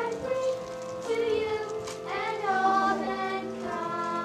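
Children's choir of young girls singing a song, with long held notes that slide between pitches.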